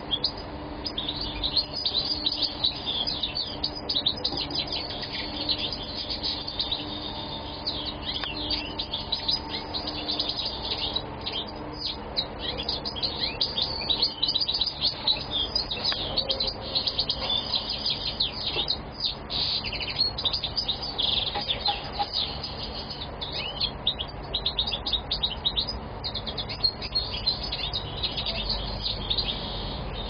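European goldfinch of the Moroccan strain singing without pause: a fast, dense twittering of high chirps and trills.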